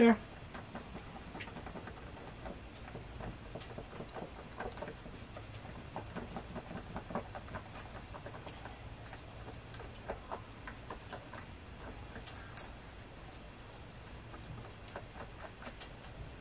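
Two-part epoxy being stirred on a sheet of paper with a small tool: faint, irregular scraping and light ticking, with one sharper click about twelve and a half seconds in, over a steady low hum.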